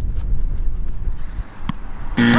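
Wind buffeting the microphone as a low rumble that eases off after about a second, then a single sharp knock of a football being kicked near the end.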